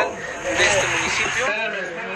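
Only speech: a man speaking Spanish, his voice dropping quieter after the first word.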